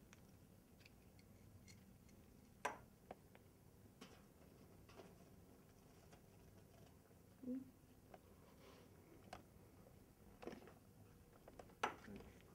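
Near silence with a few faint, scattered clicks: plastic IV tubing and its roller clamp handled in gloved hands while the line is primed with saline.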